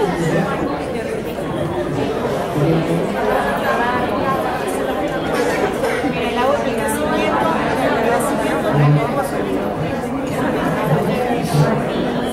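Many people talking at once in a large room: a steady babble of overlapping conversations, with no single voice standing out.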